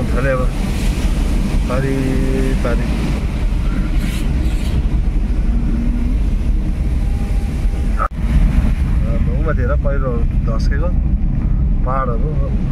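Steady low rumble of a car driving on a wet road, heard from inside the cabin: engine and tyre noise with a hiss of spray.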